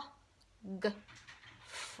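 A woman's voice saying a single short letter sound, 'g', about a second in, as a phonics sound for 'frog', then a brief breathy hiss near the end.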